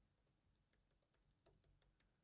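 Near silence: room tone with a few very faint, scattered clicks, the most noticeable about a second and a half in.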